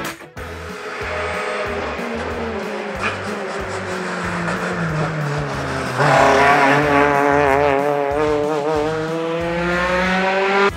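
Peugeot 208 rally car engine at high revs, the pitch climbing steadily. About six seconds in it jumps louder, with the engine note wavering up and down as the car is driven hard along the stage.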